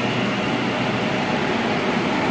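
Steady, loud din inside a metro station: a continuous mechanical rumble with no breaks or sudden sounds.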